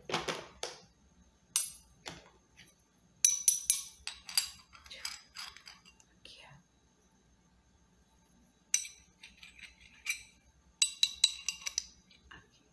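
Steel car tools clinking together: an open-end wrench tapped and rattled against a chrome socket close to the microphone, in quick runs of sharp, ringing metallic clinks with pauses between. It opens with a burst of handling noise.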